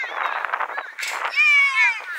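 Young children shouting on a football pitch, with one long, high-pitched yell about halfway through that falls away at the end.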